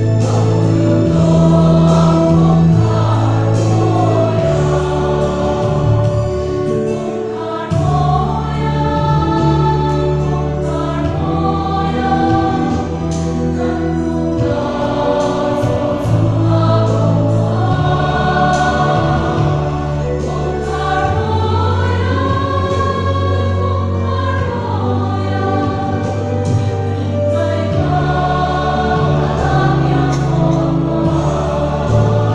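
Mixed choir singing a hymn in many voices, over sustained low bass notes that change every couple of seconds, as from a keyboard accompaniment.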